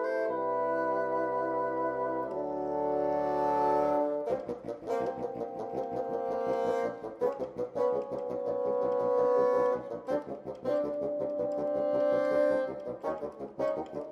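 Bassoon quintet of four bassoons and a contrabassoon playing: sustained chords for about the first four seconds, then a rhythmic passage of short, repeated detached notes.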